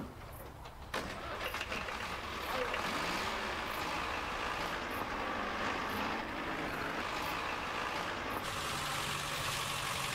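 An old car's engine starting about a second in, then running steadily.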